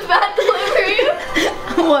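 Boys laughing and chuckling, mixed with a little speech.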